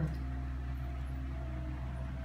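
Steady low hum of room tone with no other events.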